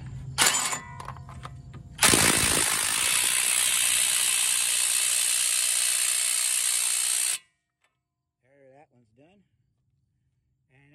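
A power wrench runs steadily for about five seconds, driving the tie rod end nut tight on the front knuckle, and cuts off suddenly. A short burst from the same tool comes about half a second in.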